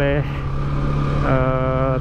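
Single-cylinder motorcycle engine running steadily at cruising speed, heard from on the bike with road and wind noise. Near the end a man's voice holds a drawn-out 'ehh' over it.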